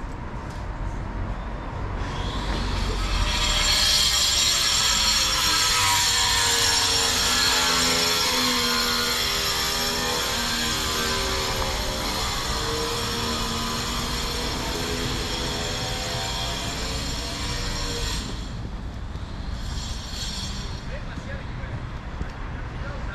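Street traffic with a loud vehicle passing close by: its noise builds over a couple of seconds, is loudest about four seconds in, then slowly fades and drops away near the end.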